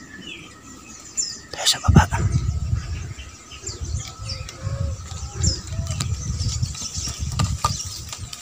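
Small forest birds chirping in short high notes over irregular low noise, with a sharp click about two seconds in.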